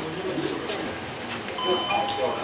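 Indistinct voices of people talking in a busy room, with a short electronic tone sounding near the end.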